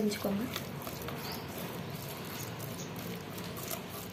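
A hand mixing a wet spice paste in a stainless-steel bowl: soft, irregular squishing and scraping of fingers against the steel.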